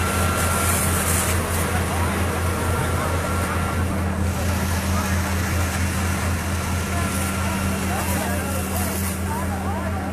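A vehicle engine running steadily with a low, slightly pulsing hum, with faint voices in the background.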